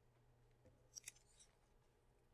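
Near silence, with a few faint, short crackles of paper being handled about a second in.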